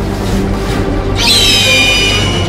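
Background music with a steady low drone, and about a second in a shrill, high bird-like screech starts, dipping slightly in pitch and holding on: the cry of a creature hatching from a flaming egg.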